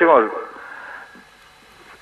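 A man's voice over a telephone line, heard only up to about 4 kHz, trails off in the first moment. A short pause with faint line hiss follows.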